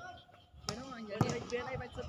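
Voices talking, with two sharp knocks a little past the middle, about half a second apart, the second one louder.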